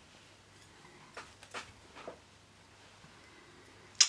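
Near silence, with a few faint ticks in the first half as thread and flat gold tinsel are handled at the hook of a fly in the vise.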